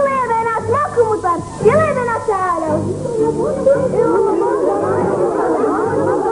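A woman sings a solo line of a traditional Gulf children's folk chant, her voice sliding up and down in pitch. About halfway through, a chorus of girls joins in, singing together.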